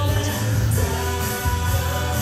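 Background music with a singing voice and a heavy bass line.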